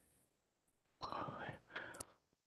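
Near silence, then about a second in a quiet, whispery voice speaks briefly.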